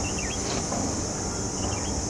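A steady high-pitched insect chorus, with short bird chirps about a quarter-second in and again near the end, over a low rumble.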